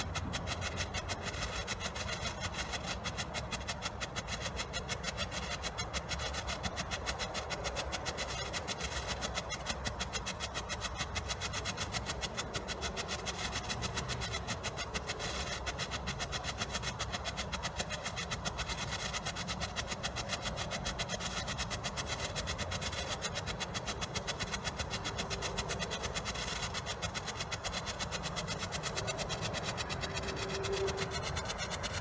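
White strobe ground firework (Disco Flash White) burning, giving a rapid, even stream of small pops for the whole time.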